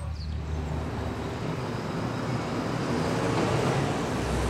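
Urban street ambience with traffic noise, growing slightly louder over a steady low hum.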